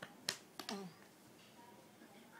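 Three sharp taps in the first second as small alphabet picture cards are handled on a floor mat, then low room tone.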